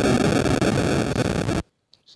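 Loud harsh static-like noise that cuts off abruptly about one and a half seconds in.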